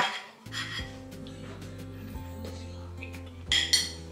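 Background music with a steady bass comes in about half a second in. Over it, a fork clinks and scrapes against a plate a few times, loudest twice near the end.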